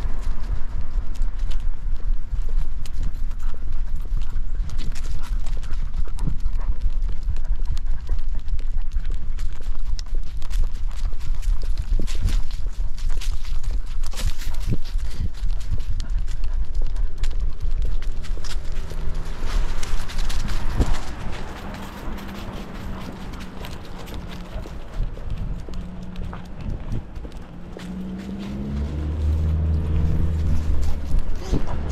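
Rapid, rhythmic knocking and rubbing from a camera harness on a walking dog: its paw steps and the mount jostling on its back, over a low rumble. It turns quieter about two-thirds in, and a low hum rises near the end.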